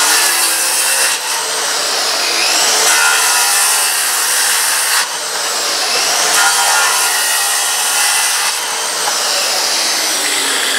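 Corded electric circular saw running and cutting through a wooden board, the motor under load, with a short dip about five seconds in.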